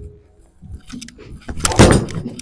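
Footsteps on a bowling approach, then a loud thud near the end as a Roto Grip Attention Star bowling ball is laid down on the lane and starts to roll.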